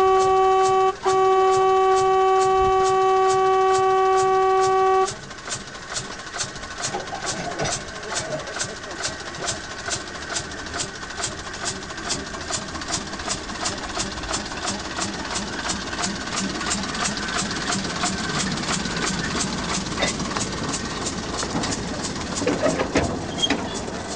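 Small narrow-gauge diesel locomotive sounding its horn in one long steady blast, broken briefly about a second in and ending about five seconds in. It then runs with an even, rapid knocking beat of several knocks a second that grows slowly louder as the train moves off past.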